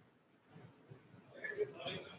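Faint, indistinct speech away from the microphone, picking up in the second half.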